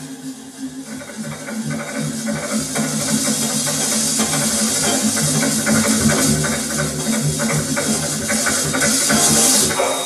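Experimental live performance on two turntables and a laptop: a dense hissing noise texture over a low, throbbing drone, building in loudness and dropping away abruptly at the very end.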